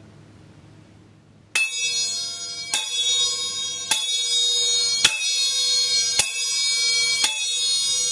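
Chappa (small Japanese hand cymbals) played open for the strongest 'jan' tone with the full-arm figure-eight stroke: six strikes about a second apart, starting about a second and a half in, each left to ring on undamped into the next.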